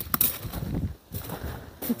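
Footsteps crunching on loose gravel, with a few crisp steps near the start.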